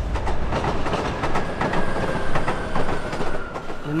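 Electric commuter train running along the tracks. Its wheels clatter over the rail joints, with a thin steady whine that falls slightly in pitch.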